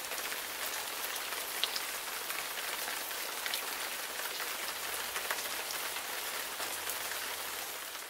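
Steady rain falling: a dense, even hiss with scattered sharper drop ticks, beginning to fade out near the end.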